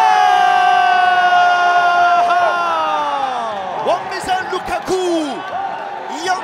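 A football commentator's goal call: one long shout held for about two and a half seconds and sliding down in pitch, then a few shorter shouts, over crowd cheering.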